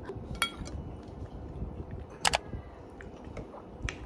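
Metal fork clinking against a ceramic bowl while eating: a ringing clink about half a second in and a louder, sharper one just past the middle, with a faint tick near the end.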